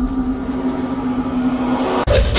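Dramatic background music: a single low note held steadily as a drone, with a fainter higher tone above it, cutting off shortly before the end.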